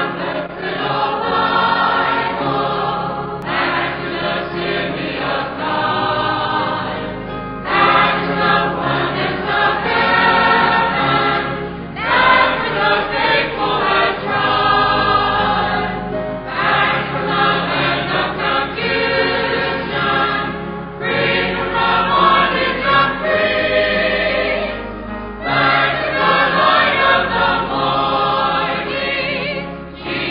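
A choir singing a hymn, in phrases of about four seconds with brief breaks between them.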